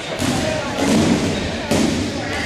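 Rubber dodgeballs thudding on a hardwood gym floor, a few dull thumps with the loudest about halfway, over people talking in the gym.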